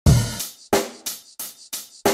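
Drum beat opening a hip-hop track: a deep opening hit, then four sharper drum hits about a third of a second apart, with no other instruments under them.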